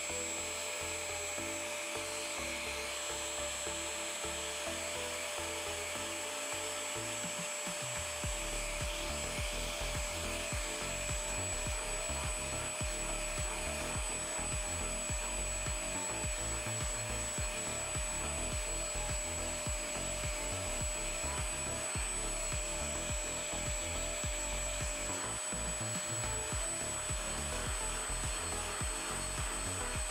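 Anko spot cleaner running with a steady hum while its scrubbing-brush head is rubbed back and forth over carpet; from about eight seconds in, the brush strokes come fast and continuous.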